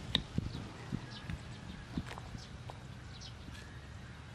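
Knife cutting cauliflower on a thick round wooden chopping board: a handful of irregular wooden knocks, the sharpest just after the start, thinning out in the second half.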